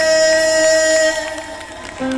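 Live pop ballad sung at the piano: a long held sung note over sustained low chords, ending about a second in, after which the music dies down.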